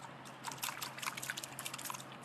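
A stick stirring and scraping through mud and water in a glass bowl: faint sloshing with many small clicks and taps.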